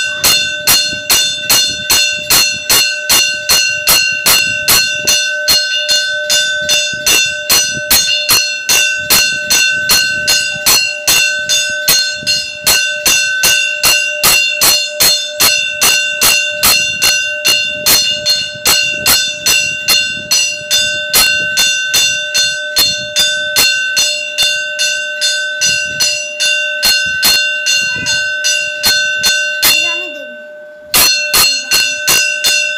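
Temple bell rung rapidly and steadily during the puja, about three strikes a second, each strike ringing on with the same clear bell tones.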